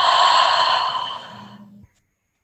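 A woman's long, audible exhale through the mouth, a breathy sigh that fades away over about a second and a half and ends in a faint hum before cutting off suddenly.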